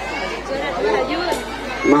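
Several voices talking over one another at once: general crowd chatter.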